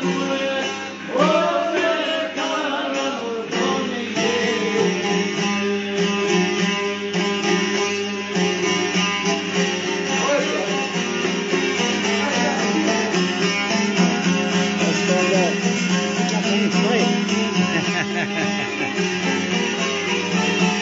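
Long-necked folk lute picked in a fast, continuous tremolo, playing a folk melody. A man's voice sings a few gliding phrases over it in the first few seconds, then the lute carries on alone.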